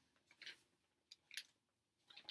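Faint, brief rustles of a thin plastic garment bag being handled, twice, with a light click between them.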